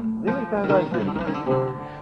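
Oud being plucked, playing a short melodic introduction with some held notes.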